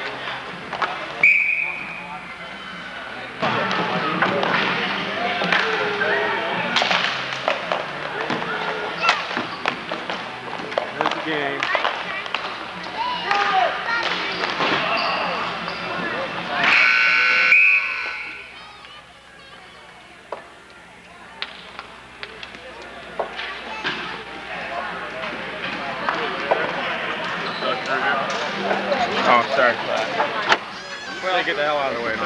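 Ball hockey play: sticks and ball knocking amid shouting voices. A short high-pitched blast about a second in and a longer, louder one a little past halfway, after which the noise drops for a few seconds.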